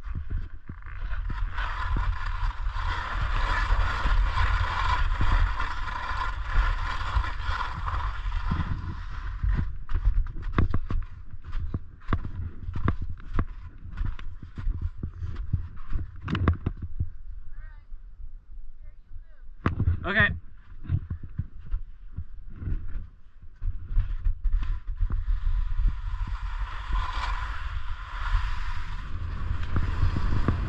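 Snowboard sliding along a packed snow traverse: a steady scraping hiss of the board on snow with wind rumbling on the microphone. Through the middle it turns rougher, with scattered knocks and scrapes, and a short vocal sound comes about twenty seconds in before the smooth sliding hiss returns near the end.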